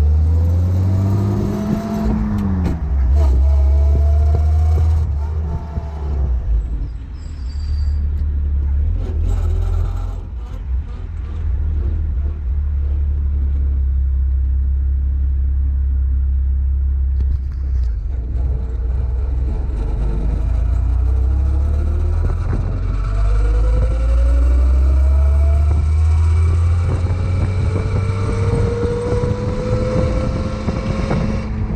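1917 Hudson Super-Six straight-six engine driving the open car, its pitch rising as it accelerates and falling back as gears are changed, with a lower, quieter stretch in the middle before it climbs again near the end. A heavy low rumble and wind on the microphone sit under it.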